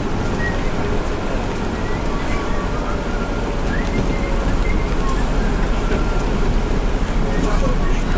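Bus engine and road noise heard from inside the cabin while driving: a steady rumble, with faint indistinct voices of passengers underneath.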